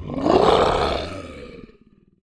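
A big-cat roar sound effect: one long roar that swells fast, peaks about half a second in, then fades away in a rattling, pulsing tail near the end.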